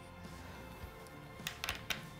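Soft background music, with a few small clicks near the end as a shock pump's head is fitted onto the air valve at the top of a dropper seatpost.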